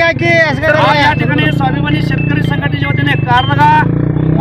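A vehicle engine idling steadily underneath loud men's voices speaking over it.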